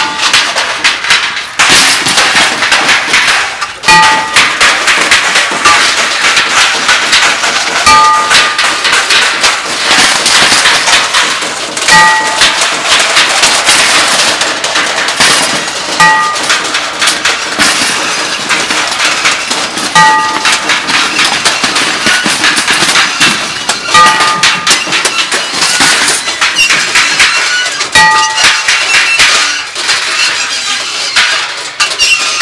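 Improvised scrap-metal noise music: dense, continuous clattering and banging of metal, including a wire shopping cart being dragged and knocked about. A short ringing tone sounds every four seconds.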